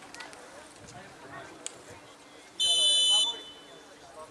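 Referee's whistle: one short, shrill, steady blast of about two-thirds of a second, about two and a half seconds in. It is the signal that the penalty kick may be taken. Faint spectator chatter runs around it.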